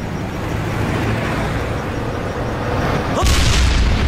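A large explosion goes off suddenly about three seconds in, a deep boom that keeps rumbling after the blast. Before it there is a low steady drone.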